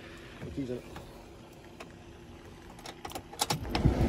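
Keys jangling on the ignition of a 2004 Chevy Silverado as the key is turned, a few sharp clicks about three seconds in, followed by a low rumble rising as the engine is cranked near the end.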